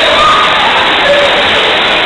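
Busy swimming pool: a steady noisy wash of churning water and a crowd of voices, with a few short calls rising out of it.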